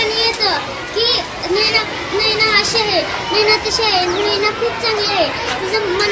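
A young girl speaking in a high child's voice, in short continuous phrases.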